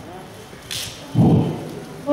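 Foil gift wrap crackling as it is pulled off framed pictures. There is a short hissy crackle about two-thirds of a second in, then a loud low rumbling thump just past the middle.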